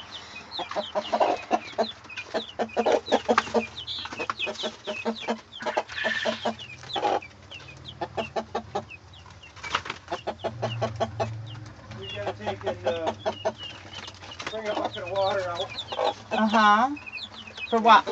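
Chickens calling continuously: a hen's clucks mixed with many rapid, high, falling peeps from young chicks.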